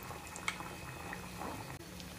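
A puri deep-frying in hot oil in a kadhai: the oil bubbles and fizzes steadily as the puri puffs up, with one light click about a quarter of the way in.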